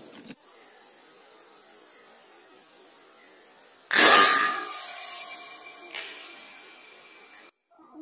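A single air rifle shot about halfway through, a sharp loud report that rings and fades over about two seconds, followed by a faint click. Before the shot there is only a low steady hiss.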